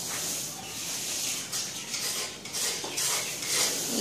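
Paint roller being rolled over a painted wall in repeated strokes, a soft hissing swish that swells and fades with each pass.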